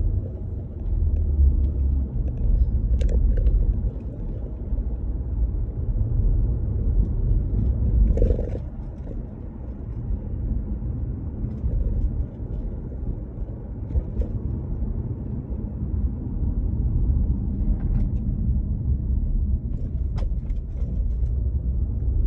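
Inside a moving car's cabin: a steady low rumble of the car driving along the road, with a few brief clicks scattered through it.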